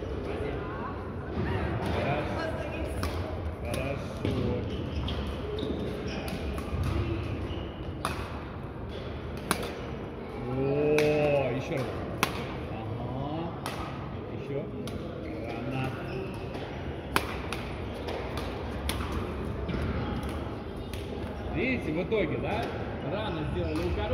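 Badminton rackets striking shuttlecocks, sharp cracks at irregular intervals from several courts, over steady background chatter of players echoing in a large sports hall. About ten seconds in, one voice calls out louder, a drawn-out rising and falling shout.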